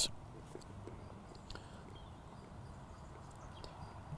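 Quiet background with a steady low hum, and a few faint clicks and rustles of fingers working the plastic chin-strap buckle of a helmet.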